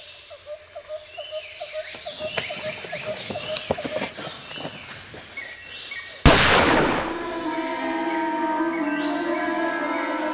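Tense background score with a fast ticking pulse, then a single loud revolver gunshot about six seconds in that rings out briefly, followed by sustained music chords.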